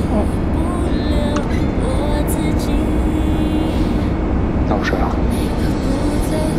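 A slow pop ballad with a sung vocal, laid over a steady low drone of airliner cabin noise.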